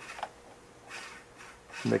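Small DC gear motor of a model rover wheel running with a faint steady whine, driven through an MX1508 dual H-bridge board.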